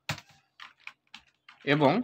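Typing on a computer keyboard: a quick, irregular run of keystrokes, about eight in under two seconds.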